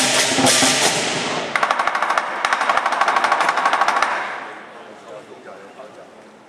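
Lion dance percussion: cymbals crashing over the drum, then a fast, even drum roll from about a second and a half in until about four seconds, after which the sound dies away.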